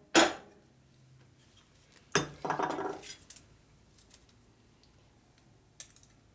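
One sharp blow of a heavy soft-faced hammer on a square steel tube clamped in a steel angle plate, tapping it down to seat it. About two seconds later comes a short metallic clatter as the hammer is set down on the steel mill table, followed by a few light clicks.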